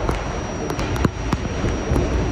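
R68/R68A subway car running at speed through a tunnel: a steady rumble and rush of wheels on rail, with irregular sharp clicks and clatter from the wheels passing over the track.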